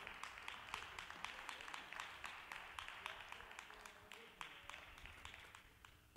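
Light applause from a small group, with individual hand claps standing out, tapering off near the end.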